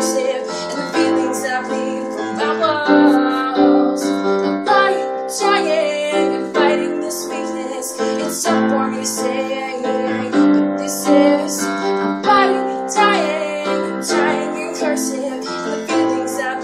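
Digital piano played with both hands, a continuous run of struck chords and melody notes, with a woman's wordless singing coming in at times.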